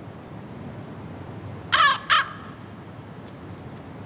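A crow-family bird calling twice: two short, harsh caws in quick succession just under two seconds in.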